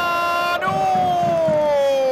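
A football commentator's long drawn-out shout, one held note that slides slowly down in pitch, over the noise of a stadium crowd.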